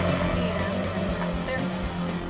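Background workout music with a steady bass line.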